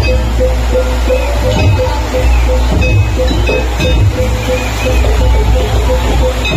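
Loud Balinese gamelan music accompanying a Barong dance: one note repeats in a fast, even rhythm over regular deep drum beats.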